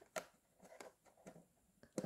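Near silence, broken by one faint click shortly after the start and a few softer ticks later: small plastic playset pieces being handled.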